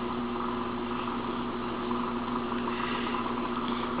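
Grizzly G0462 wood lathe, driven by a treadmill DC motor, running at about 600 RPM: a steady motor hum with a whir.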